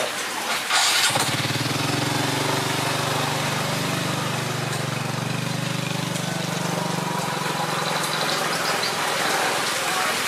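Diesel dump truck engine running at a steady raised note, setting in about a second in after a brief rush of noise and easing near the end, as the truck's bed is tipped to unload its soil.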